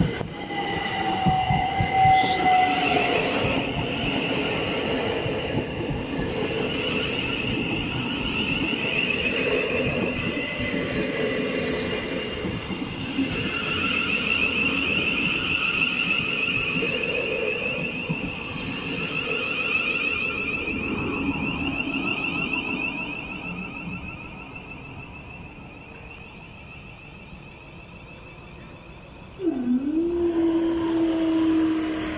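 Two electric multiple-unit trains, a Southern Class 377 and a Thameslink Class 700, passing close by: wheels running over the rails under a steady high whine. The sound fades over the last few seconds as the trains draw away.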